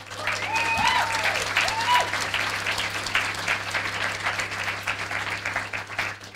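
An audience applauding steadily, with a couple of short cheers from individual voices in the first two seconds.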